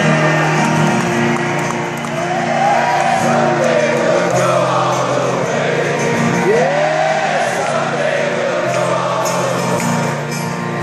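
A live rock band playing a slow song through a stadium PA, with held chords and singing over them.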